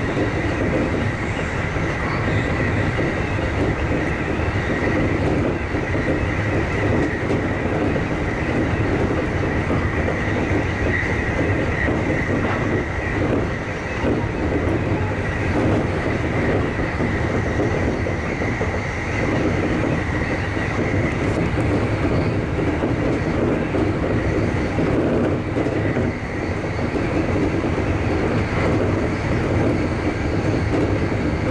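Running noise heard from inside a JR East E531 series electric train at speed: a steady rumble of wheels on rail with a steady high whine over it, and now and then a faint clack over the track.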